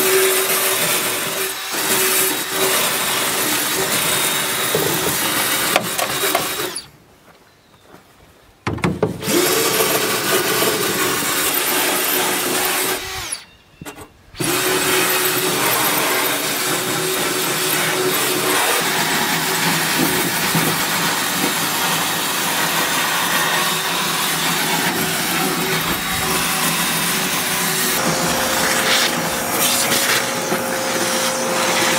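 Cordless drill running hard against the floor of an aluminum boat hull, cutting out twice for about a second. Near the end a vacuum cleaner motor starts with a steady hum.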